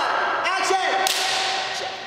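A young person's raised voice calling out briefly, then a sudden rush of hiss about a second in that fades away over most of a second.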